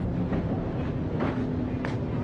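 Steady low rumble of vehicle noise, with two short sharp clicks in the second half.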